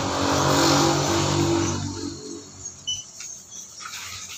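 A motor vehicle's engine passes by, getting louder over the first second and then fading away about two seconds in.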